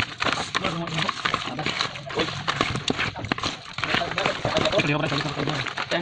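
A stiff brush scrubbing crabs in a metal tray: fast, uneven scraping and clicking of bristles and shells knocking against each other.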